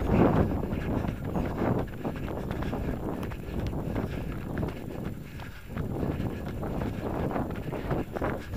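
Running footsteps on a dirt track, with wind buffeting the microphone as it moves.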